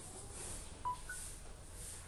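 Two short electronic beeps, the second higher than the first, about a quarter second apart near the middle, over a faint steady background hiss.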